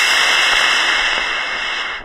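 Solid-fuel model rocket motor burning in flight: a loud, steady hiss that thins a little as the rocket climbs, then cuts off sharply near the end at motor burnout.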